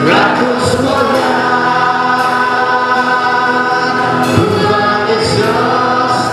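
Choir or congregation singing a hymn together in long held notes.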